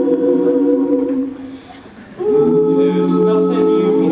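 A cappella vocal group singing sustained chords in close harmony through microphones. The chord fades away a little over a second in, and after a short gap a new chord comes in sharply just past two seconds and is held.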